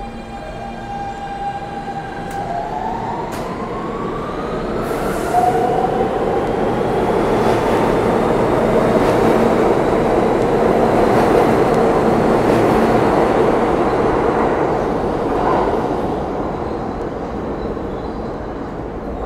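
R160B subway train with Siemens propulsion pulling out of the station. Its motors give a rising whine as it gets under way, with a few sharp clicks. The running and wheel noise then builds as the cars pass and fades near the end as the train leaves.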